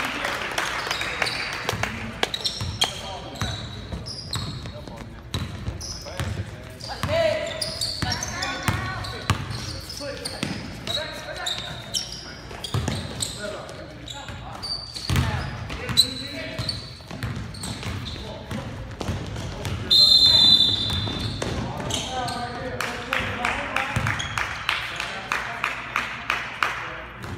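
Basketball game in a large gym: a basketball bouncing on the hardwood court, sneakers squeaking and players' and spectators' voices echoing. A referee's whistle blows once for about a second, some twenty seconds in, the loudest sound.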